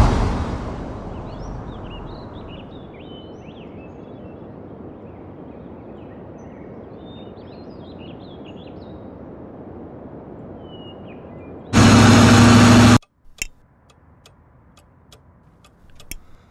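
Outdoor ambience: birds chirping over a steady background hiss, after a swelling whoosh that fades at the start. About twelve seconds in, a loud noise cuts in for just over a second and stops abruptly. It is followed by quiet, steady ticking, about two ticks a second.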